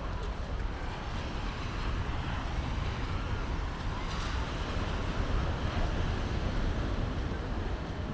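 Steady outdoor rumble, deep and even, from wind, surf and distant traffic, with faint regular footsteps of someone walking on pavement.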